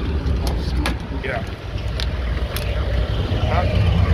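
Phone handling noise: a steady low rumble on the microphone with scattered sharp clicks and knocks as the phone is lowered and brought against clothing.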